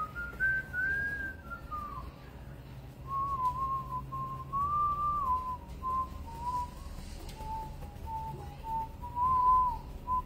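A person whistling a slow tune, single clear notes held and slurred one into the next, drifting gradually lower in pitch.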